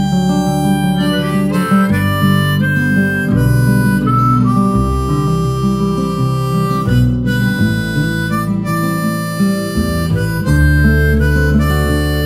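Instrumental break in an acoustic song: a harmonica plays a melody of held notes over acoustic guitar accompaniment.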